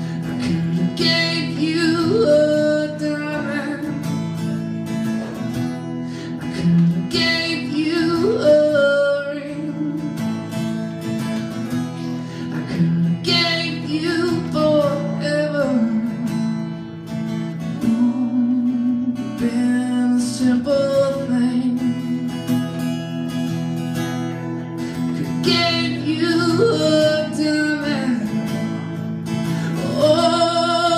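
Acoustic guitar strummed steadily under a melody line that rises and bends in phrases about every six seconds.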